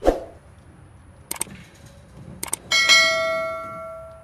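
A thump at the start, two sharp clicks a second apart, then a small bell struck once, ringing clearly and fading away over about a second and a half.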